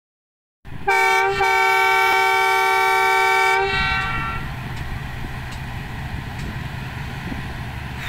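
Diesel locomotive horn sounding a short toot and then a long blast of about two seconds as the train departs, then fading into the steady low rumble of the locomotive's engine.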